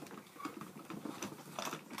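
Quick irregular clicks, taps and light rattles of small plastic hangers and doll clothes being handled inside a plastic Build-A-Bear toy wardrobe.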